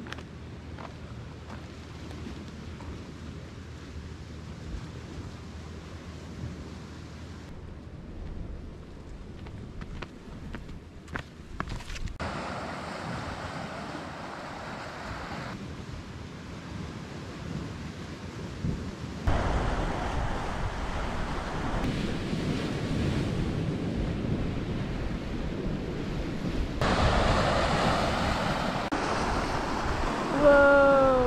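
Sea waves washing on a rocky shore, with wind rumbling on the microphone. The sound changes abruptly several times and grows louder in the second half.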